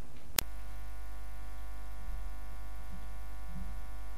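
Steady low electrical mains hum with no music playing, broken by a single sharp click about half a second in.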